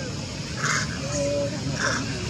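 Animal calls: short harsh calls repeating about once a second, with a brief steady tone between them, over a steady high hiss.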